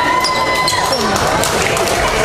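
Sports-hall hubbub: players' voices chattering and calling out, with short sharp slaps and sneaker squeaks on the wooden court as the teams slap hands down the handshake line.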